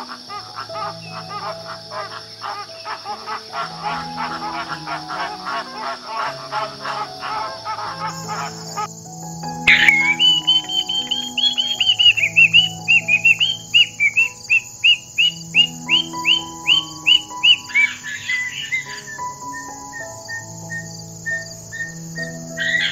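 A flock of flamingos calling in a fast, dense gabble. A few seconds before halfway this gives way to a cockatoo calling loudly in an even run of rising-and-falling calls, about three a second. Calm background music plays under both.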